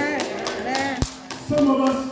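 A man's amplified voice preaching over held musical chords, with several sharp taps and one heavy thump about a second in.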